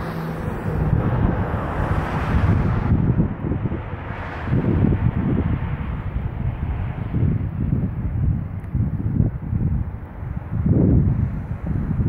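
Wind buffeting the phone's microphone in uneven gusts, a rumbling rush that swells and fades over the seconds.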